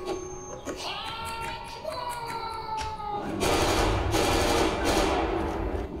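Soundtrack of the Korean drama playing: a man's voice shouting a plea in Korean over music, then a louder, dense noisy stretch from about three and a half seconds until just before the end.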